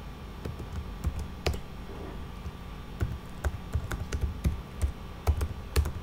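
Typing on a computer keyboard: irregular keystrokes, sparse at first and coming quicker in the second half.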